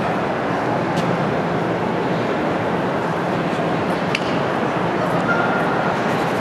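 Steady, indistinct babble of many voices in a large indoor public space, with a few faint clicks.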